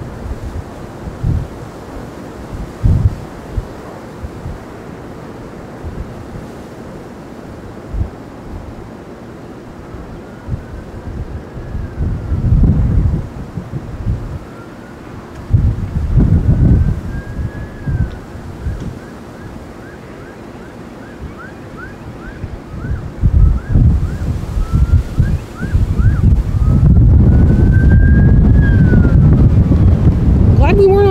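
Wind buffeting the microphone in irregular gusts, heaviest over the last few seconds. Under it a faint emergency siren wails, rising and falling slowly from about ten seconds in, switching to a fast yelp of about two strokes a second midway, then back to a slow wail near the end.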